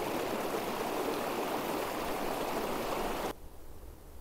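Small rocky mountain creek running, a steady rush of water. It stops abruptly a little over three seconds in, leaving much quieter outdoor ambience.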